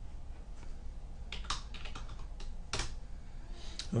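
Computer keyboard keystrokes: a handful of quick key taps in small clusters, starting about a second in, as a number is typed into a spreadsheet cell and entered.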